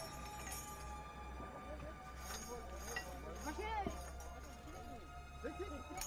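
Indistinct voices over a steady low hum and held background-music tones.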